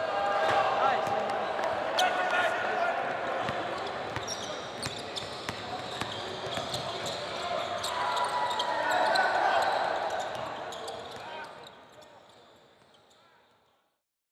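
Basketball game sound in a gym: a crowd chattering, with scattered sharp knocks of a ball bouncing on the court. It fades out over the last few seconds.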